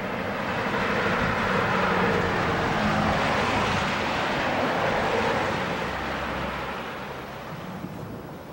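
A passing vehicle's broad rush, swelling during the first two seconds, holding, then fading away over the last few seconds.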